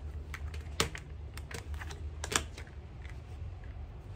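Tarot cards being handled and set down on a glass tabletop: a few light, sharp clicks and taps, loudest about a second in and again past the middle, over a low steady hum.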